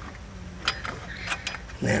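A few light metallic clicks and taps as a parking-brake cable and its metal end fitting are handled under the car, about a second in and again a little later.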